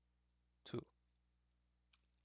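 Near silence with one short spoken word and a few faint clicks.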